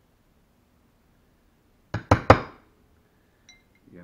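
Three quick, sharp clinks about two seconds in, each ringing briefly: hard tools or hardware knocked or set down on a hard tabletop.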